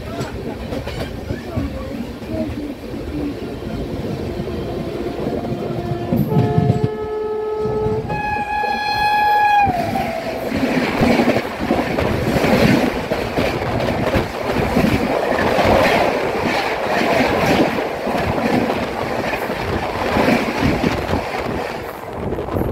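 Express train running with its wheels clattering on the rails. An oncoming WAP-7 electric locomotive sounds its horn twice, and the second blast drops in pitch as it passes, nearly ten seconds in. Then its coaches rush past alongside with a loud, dense clatter of wheels over rail joints.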